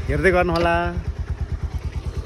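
A motorcycle engine idling with an even low putter, about a dozen beats a second. A person's voice sounds over it during the first second.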